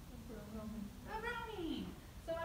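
A woman's voice with no clear words: a low held hum, then a drawn-out vocal sound that rises and falls in pitch.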